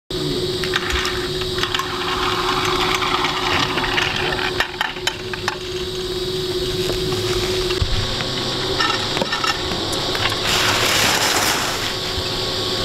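Ski lift machinery running with a steady hum, amid scattered clicks and the scrape of skis on snow. The hum stops about eight seconds in, and a louder hiss of skis sliding on snow rises near the end.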